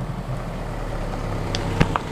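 A car engine running close by, a steady low hum, with a couple of short clicks near the end.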